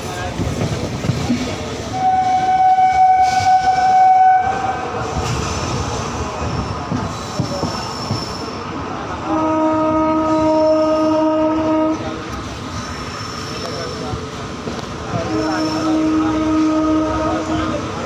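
Passenger train running on its rails with wheels clattering, its horn sounding three long blasts. The first blast, about two seconds in, is higher; the two that follow, near the middle and near the end, are lower and fuller.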